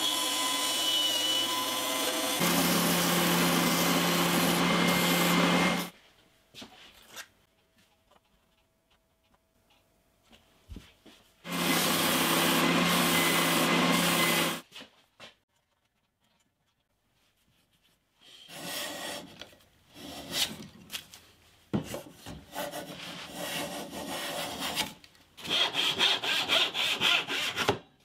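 Cherry wood blocks being shaped: a bandsaw runs and cuts for the first six seconds, a belt sander runs for a few seconds around the middle, and from about two-thirds of the way in a hand backsaw cuts in irregular rasping strokes.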